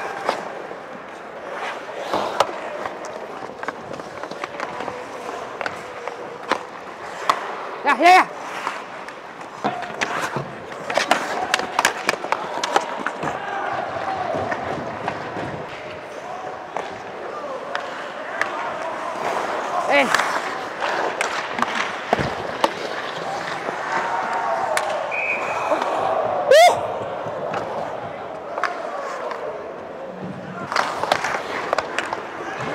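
Ice hockey play heard rinkside: skate blades scraping and carving on the ice, with sharp clacks and knocks of sticks and puck and thuds against the boards. Voices shout over it, loudest about eight seconds in and again near the end.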